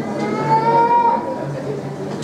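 A single drawn-out voice-like call, held for about a second with its pitch rising slightly, over the murmur of people talking in the room.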